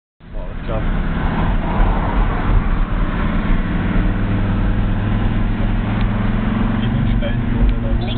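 Car engine and road noise heard from inside a moving car's cabin: a steady low drone.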